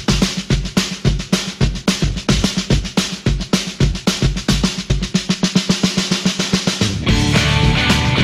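Drum intro to a rock song: an even beat of bass drum and snare that quickens into a roll. About seven seconds in, the full band comes in with electric guitars and keyboard.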